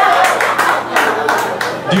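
Audience applause: many hands clapping together, with crowd voices mixed in, thinning out toward the end.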